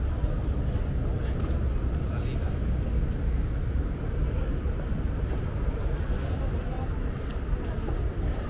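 Steady low rumble of wind buffeting the microphone, with faint, indistinct chatter of people in the background.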